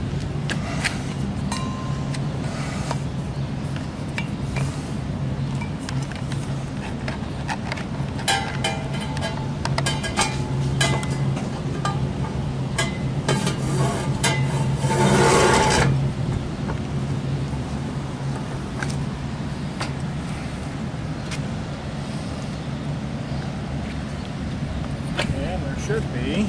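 Light metallic clicks and clinks as the insulator and inner-conductor bullet are fitted into the end of a copper rigid coaxial transmission line, with a brief louder scraping rush about fifteen seconds in. A steady low hum runs underneath throughout.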